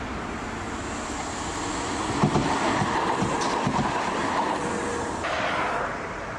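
Articulated tram running past on street track, its wheels knocking several times over rail joints from about two seconds in over a steady rolling rumble. The sound changes abruptly near the end.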